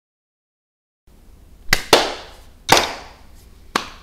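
Dead silence for about a second, then faint room noise with four sharp clicks close to a microphone, two of them followed by a short breathy rush that fades.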